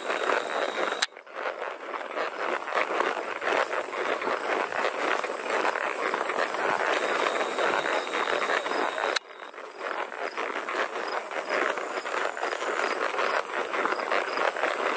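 A horse walking on a dirt and gravel lane, heard from the saddle as a constant crunching, rustling noise, with faint insect chirping behind it. The sound breaks off abruptly twice, about a second in and about nine seconds in.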